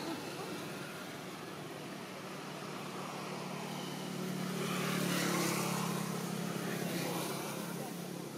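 A motor vehicle's engine passing by: a steady low hum that swells to its loudest about five seconds in, then fades.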